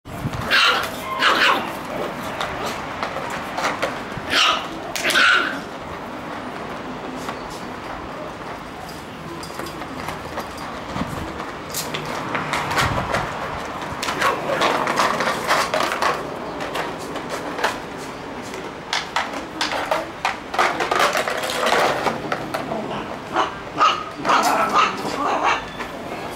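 Shiba Inu puppies yipping and barking at play, with several high-pitched yelps in the first six seconds and a busier run of short yaps near the end.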